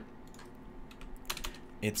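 A few quick clicks of a computer keyboard, about a second and a half in.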